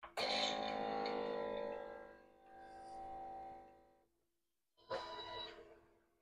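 Ninja Thirsti drink maker starting a drink cycle: a steady buzzing pump hum that stops about four seconds in, then runs again for about a second.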